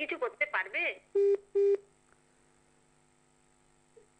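Telephone line during a phone-in call: a brief stretch of talk, then two short identical beeps about half a second apart, the loudest sounds here. After them only a low steady hum remains.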